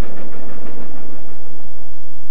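Steam train running, a steady noisy rumble with no speech over it.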